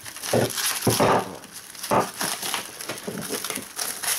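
Plastic cling film crinkling in irregular bursts as it is stretched and pressed by hand over a plastic tub.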